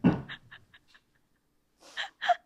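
A person's breathless, wheezing laughter: a quick run of short breathy puffs that fade out over about a second and a half.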